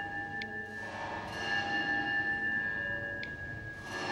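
Clock bells struck by the knight quarter jacks of a medieval cathedral clock. Bell tones ring on and are renewed by fresh strokes, once about a second in and again near the end.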